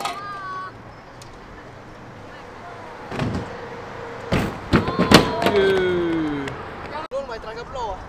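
Freestyle scooter hitting the ramp and landing, with sharp clacks about four and five seconds in, followed by a long falling shout of excitement.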